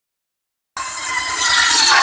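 Circular saw blade on a table driven by a small single-cylinder stationary engine, ripping through a wooden plank. The engine's steady pulsing runs underneath, while the blade's whine and cutting noise grow louder toward the end. The sound begins abruptly under a second in.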